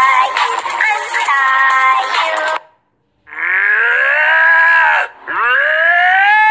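Music with a heavily processed singing voice cuts off about two and a half seconds in. After a short gap a domestic cat yowls twice, each call long and drawn out, rising and then falling in pitch.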